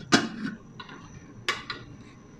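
Aluminium pan lid being set down on the pan's rim: a sharp clink just after the start and a second clink about a second and a half in, with a short ring after it.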